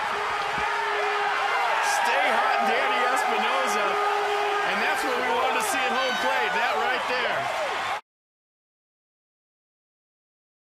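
Ballpark crowd and players cheering and yelling over each other after a walk-off win, with a few sharp cracks mixed in. The sound cuts off abruptly about eight seconds in.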